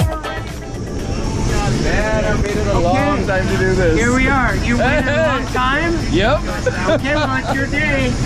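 A small jump plane's engine running steadily, heard from inside the cabin just before taxiing out, with people talking and laughing over it.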